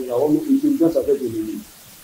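A man's voice speaking, ending about a second and a half in, followed by low room tone.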